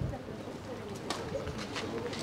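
Faint outdoor background of soft, low cooing calls, like a pigeon's, with distant voices murmuring.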